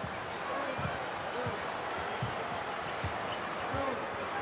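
A basketball dribbled on a hardwood court, about five low bounces roughly three-quarters of a second apart, over a steady arena crowd murmur.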